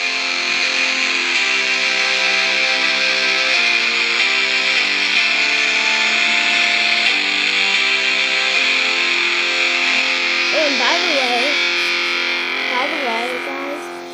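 GarageBand Smart Guitar on an iPhone 6 playing guitar chords through the phone's speaker, one held chord after another about every second, fading out near the end. A voice comes in briefly over it twice near the end.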